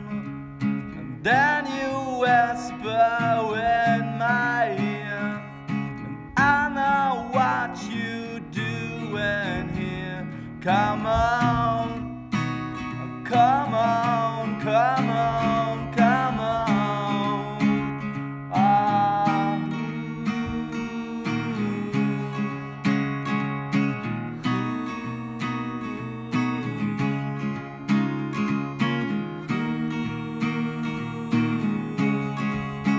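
Acoustic guitar strummed in a steady rhythm, with a wordless sung melody over it for about the first twenty seconds, then guitar alone.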